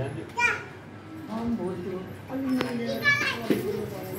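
Household voices: a child's high-pitched calls about half a second in and again near the end, over adults talking quietly. A short sharp click comes a little past halfway.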